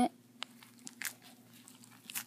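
A few faint, short crackles and ticks, clearest about half a second and about a second in, as fingers work into and tear the skin and fur of a freshly shot cottontail rabbit being skinned by hand.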